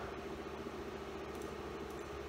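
Steady low electrical hum made of several even tones, over a faint hiss.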